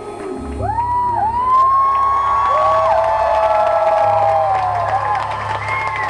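Concert audience cheering at the end of a song, with several long, held whoops that start one after another, over the band's closing sound.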